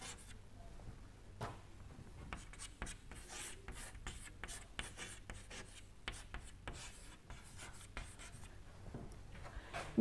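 Chalk writing on a chalkboard: a faint string of short taps and scratchy strokes as an equation is written out.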